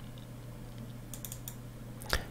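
A few faint computer-keyboard keystrokes, a small cluster of them about a second in, over a steady low electrical hum.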